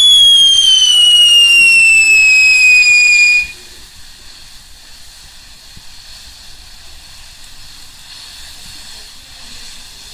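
Firework whistle: one loud, shrill tone that falls slowly in pitch and cuts off suddenly about three and a half seconds in. It is followed by the quieter hiss of a ground fountain firework spraying sparks.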